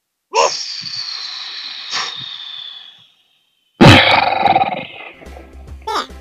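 Cartoon sound effects: a high sound slides slowly down in pitch for about two and a half seconds. After a short silence comes a loud crash that dies away over about a second, and music comes in near the end.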